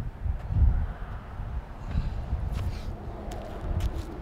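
Wind rumbling and buffeting against the microphone in uneven surges, with a few footsteps on concrete near the end.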